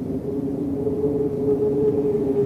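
Opening of a heavy rock track: a low sustained drone of held notes over a rumble, swelling slightly louder.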